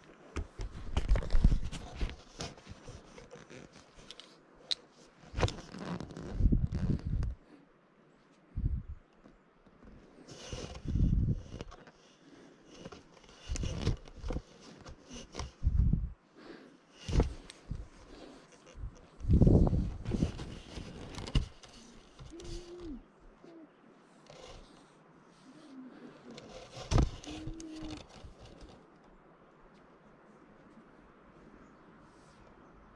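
Camera handling noise: irregular rubbing, scraping and dull knocks against the microphone as the camera is moved and adjusted, with climbing rope and belay gear rustling.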